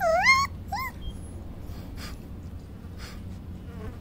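Puppy giving two high-pitched yips right at the start, a longer wavering one then a short rising one, then falling quiet.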